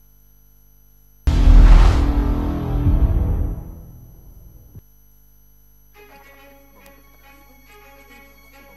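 A sudden, very loud, deep cinematic boom hit that dies away over about three seconds and then cuts off: a transition sound effect. About two seconds later quieter music with melodic notes begins.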